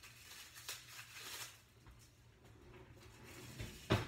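Faint off-camera kitchen handling noises: a few light clicks and a brief rustle, then one sharp knock near the end.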